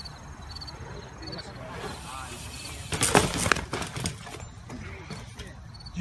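A BMX bike and its rider crashing onto packed dirt about three seconds in: a short clatter of several sharp impacts.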